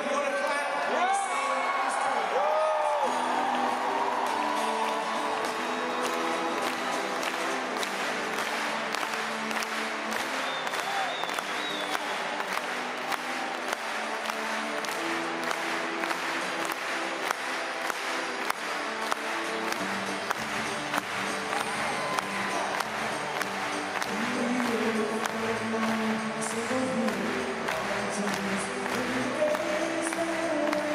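Acoustic guitar strummed in a steady rhythm, opening a live song, with an arena crowd cheering and whooping during the first few seconds.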